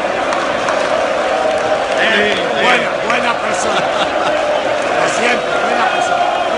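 Large stadium crowd of football supporters chanting and shouting, many voices blending into a steady loud mass, with nearer voices over it.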